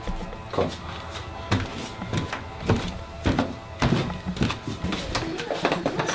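Footsteps and light knocks of people walking through a house, irregular, about one every half second to a second, over a faint steady background hum.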